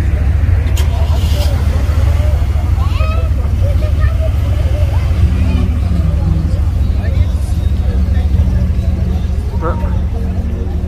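A car engine idling steadily, a deep even hum, under the chatter of a crowd.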